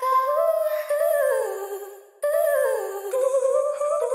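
A sung vocal sample with its lows cut, playing a slow melody with sliding notes in two phrases with a brief break about halfway, run through a stereo doubler effect.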